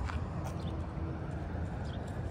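Steady low outdoor rumble with a faint hum, with a few faint ticks.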